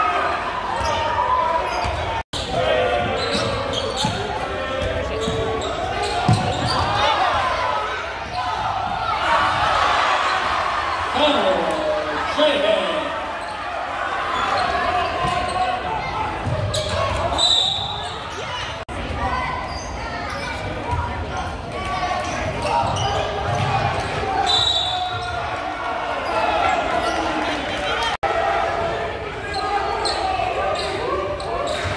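Basketball game in a gymnasium: a ball bouncing on the hardwood court amid a steady hubbub of crowd and player voices, echoing in the large hall.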